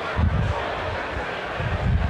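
Outdoor background hiss with low rumbling gusts of wind on the microphone, a little after the start and again near the end.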